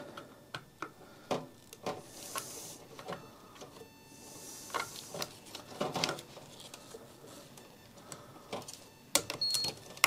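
Scattered clicks and plastic rustles of a power supply tester's connectors being fitted onto a PC's 24-pin and CPU power cables by gloved hands. A short high beep comes near the end.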